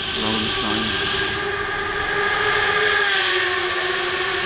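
Sport motorcycle riding at speed through a road tunnel: the engine holds a loud, steady, droning note over the rush of wind, easing slightly lower near the end.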